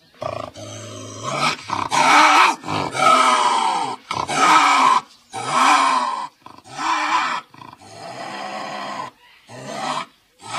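Lynx calling: a run of about eight harsh, rasping calls, roughly one a second, with short gaps between them.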